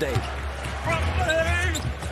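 Basketball being dribbled on a hardwood court during live play, under arena background noise.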